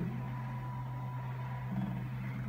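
Charmhigh desktop pick-and-place machine running with a steady low hum; about half a second in a faint thin whine joins it as the mount head travels to its calibration position.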